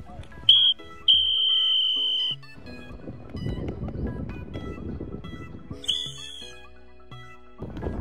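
Background music over field noise, cut through by a referee's whistle: a short blast about half a second in, then a long blast lasting about a second. A shorter whistle blast follows about six seconds in.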